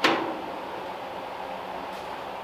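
Steady background hum of a workshop, an even noise like a fan or heater running, with a short sharp sound right at the start that fades quickly.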